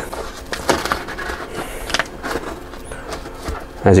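Knife blade cutting and scraping along packing tape on a cardboard box: irregular rasping strokes with a few sharper scratches.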